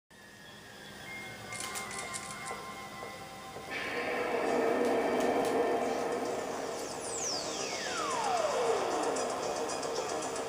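Music from a VHS tape played through a small TV/VCR combo's speaker, coming in fuller about four seconds in. Between about seven and nine seconds a long whistle-like tone sweeps smoothly down from very high to low.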